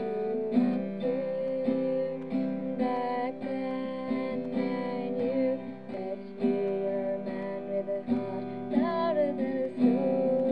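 Music: a strummed acoustic guitar with a slow melody held in long notes.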